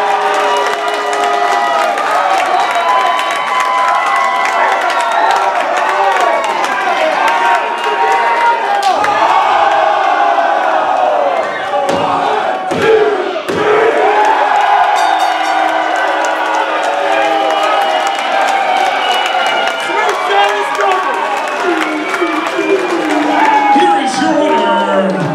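Wrestling crowd shouting and cheering around the ring, many voices overlapping. A few sharp slaps come through around the middle.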